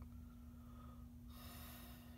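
Near silence: a faint steady hum, with a faint breathy hiss starting about halfway through.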